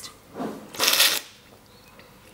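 A taster's slurp of tea from a spoon: one loud, airy slurp about a second in, drawing tea and air in together as professional tasters do.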